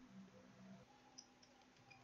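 Near silence with a few faint computer keyboard clicks as a word is typed, one slightly sharper click about a second in.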